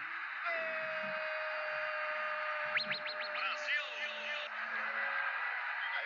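Football commentator's long, drawn-out shout of "gol" held on one pitch for about four seconds after a Brazil goal, over steady stadium crowd noise.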